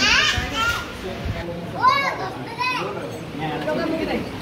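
Young children's high-pitched squeals and calls: a falling squeal at the start, then two rising-and-falling calls near the middle, over general chatter.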